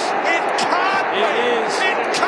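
Several excited voices shouting and whooping over one another, with a constant crowd-like din beneath and a few sharp claps or knocks.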